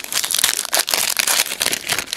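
Foil wrapper of a trading-card pack crinkling and crackling rapidly as it is handled and opened and the cards are pulled out.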